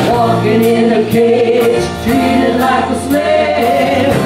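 A live band playing a song: a woman singing lead over electric-acoustic guitar, bass guitar and drums, with cymbal strokes keeping a steady beat.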